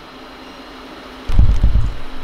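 Quiet hall room tone, then a little past halfway a sudden loud, deep rumbling thump that lasts under a second.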